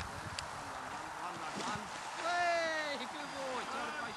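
A person's voice calls out one long, loud call whose pitch falls, a little over two seconds in, followed by a few shorter calls, over a steady outdoor hiss.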